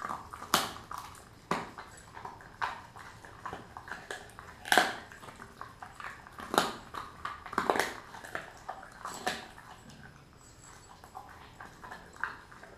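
Kelpie-mix dog chewing raw beef tail, its teeth crunching on the bone in sharp, irregular cracks about a second apart, fewer near the end.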